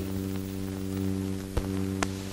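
Steady low hum and faint hiss of an old optical film soundtrack in the gap between music cues, with a sharp click about one and a half seconds in and another at the end.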